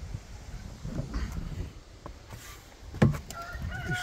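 A rooster crowing: one long call that starts just after a sharp knock about three seconds in.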